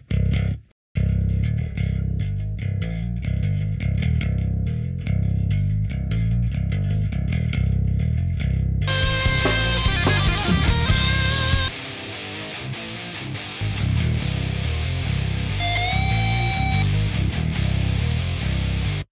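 Electric bass track of a heavy metal song, amped through a SansAmp plug-in and limited to a level volume, playing a low riff on its own. About nine seconds in, distorted guitars and the rest of the mix join. The low end drops out briefly a few seconds later, and a bent lead note comes near the end.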